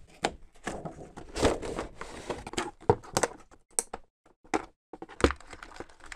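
Cardboard model-horse box with a plastic window being opened by hand: irregular knocks, scrapes and crinkles of cardboard and plastic packaging, with sharper knocks about a second and a half in and again near the end.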